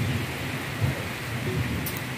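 Heavy rain, with rainwater pouring from a PVC downpipe and splashing below. An uneven low rumble runs underneath.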